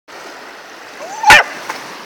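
Seawater washing and splashing around a swimming sprocker (springer–cocker spaniel cross) dog, with one sharp, very loud splash a little over a second in. A short rising call comes just before the splash.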